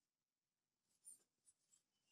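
Near silence, with faint brief scratchy rustles of yarn drawn over a metal crochet hook as single crochet stitches are worked, starting about a second in.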